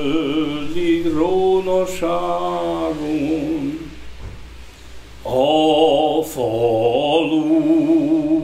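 A lone man's voice singing unaccompanied in a slow Hungarian folk-song style, with long held notes and a wavering vibrato. The voice falls away briefly about halfway through, between two sung phrases.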